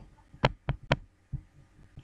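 Three quick computer mouse clicks about a quarter second apart, then a fainter fourth click.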